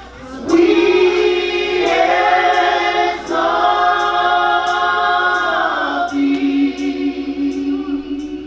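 Three women singing a worship chorus together into microphones. They come in about half a second in and hold long notes, shifting pitch near three seconds in and again about six seconds in.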